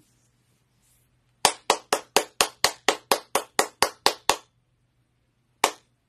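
A person clapping her hands, a quick run of about thirteen claps at about four a second, then one single clap near the end.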